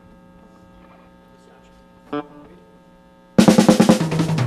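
Steady electrical hum from the stage amplifiers, with a single guitar note about two seconds in. Near the end a drum kit comes in loud with a rapid snare roll that starts the band's next song.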